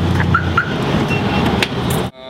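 Low engine rumble from a heavy truck, strongest in the first half second and then fainter, with a few short beeps and two sharp clicks near the end.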